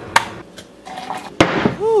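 A sharp click just after the start and a faint hiss, then a loud knock about a second and a half in as a ceramic mug is set down on a hard countertop, followed by a man's "ooh".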